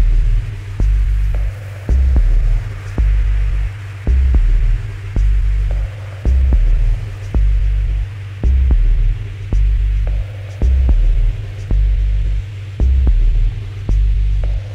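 Dub techno: a deep, throbbing sub-bass pattern that swells and dips about every two seconds, with sparse dry clicks and a soft hiss-like wash of chords.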